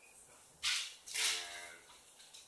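A brief hiss followed by a short voiced sound, like a single untranscribed word or syllable.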